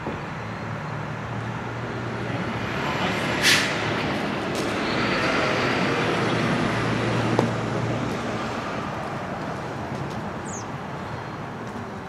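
Noise of a passing road vehicle, with a low engine hum under it, swelling to a peak near the middle and fading toward the end. A single sharp click sounds about three and a half seconds in.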